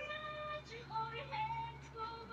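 A woman singing a held melody with music behind it, with a short laugh at the start.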